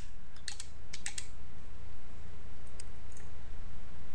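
Keystroke clicks as numbers are keyed into a TI-84 calculator emulator on a computer: about half a dozen light, separate clicks, several close together near the first second. A steady low hum runs underneath.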